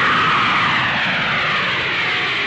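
Twin-engine jet airliner climbing just after takeoff: steady jet engine noise with a whine that falls gradually in pitch.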